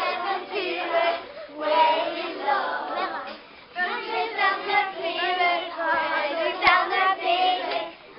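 A group of children singing together without accompaniment, in phrases with short breaks between them. There is one sharp click near the end.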